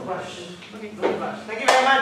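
Voices talking indistinctly, with a sharp knock about a second in and a louder voice starting near the end.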